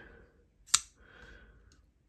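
A single sharp click about three-quarters of a second in as the blade of a Phasma frame-lock folding knife swings open and locks, followed by faint handling noise.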